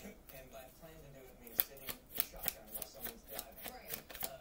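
A deck of cards being shuffled by hand: irregular crisp clicks and flicks of card stock, several a second, with one sharper snap about a second and a half in.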